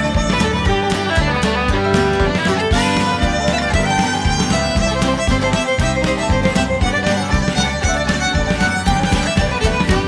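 Country band playing an instrumental break, with a fiddle lead over drums, banjo and guitars and a steady beat.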